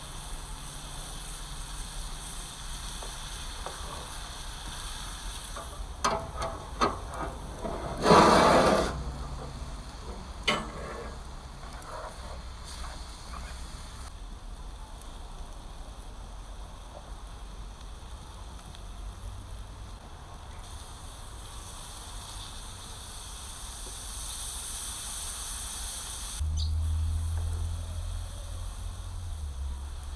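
Food sizzling steadily in a frying pan over an open wood fire, with a few sharp clicks and a loud short burst about eight seconds in as the pan is worked. A low hum joins near the end.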